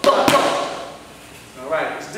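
Two sharp thuds about a quarter second apart: a dancer's sneakers landing on a studio floor during a freestyle move, under a man's voice chanting the beat ("boom"). A short vocal sound follows near the end.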